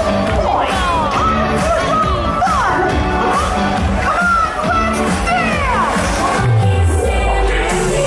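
Parade music played loud over outdoor loudspeakers, with a crowd cheering over it. Near the end a deep bass tone sweeps downward.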